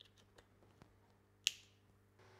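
A few faint ticks, then one sharp snap-like click about one and a half seconds in, from hands working on the red plastic fitting at the top of a 3D printer's frame.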